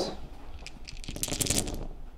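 A handful of about eighteen white six-sided dice thrown onto a tabletop gaming mat: a rapid clatter of small clicks starting about half a second in and thickest around a second and a half in as they tumble and settle.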